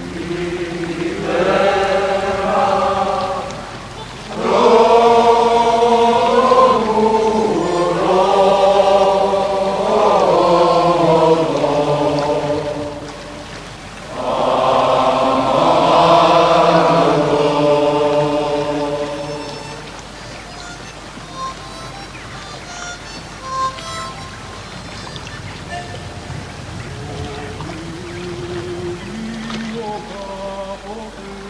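Voices singing a slow chant in three long, held phrases, then dropping away after about twenty seconds to a quieter stretch with faint scattered notes.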